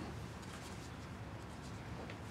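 Quiet meeting-room tone: a steady low hum with faint scattered ticks and rustles.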